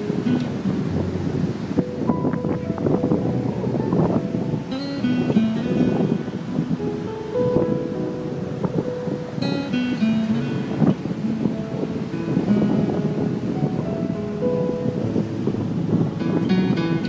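Background music, a guitar-led track with short held notes, running steadily.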